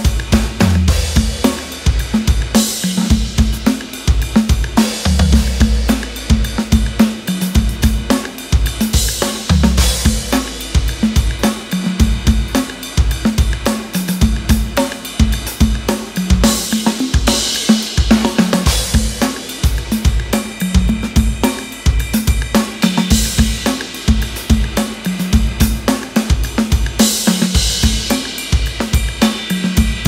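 Indie rock drum beat at 108 bpm: kick, snare and hi-hat keeping a steady groove, with cymbal crashes every few seconds. It is layered with TR-808 drum-machine percussion, and a few long, deep booming low notes sound along with it.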